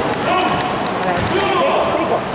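A basketball being dribbled on a hardwood gym floor, with voices in the gym hall.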